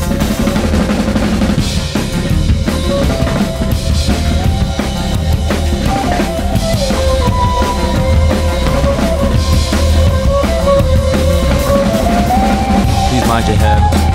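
Instrumental passage of a rock band track, with a drum kit playing a steady beat under a held lead melody that slides up and down in pitch.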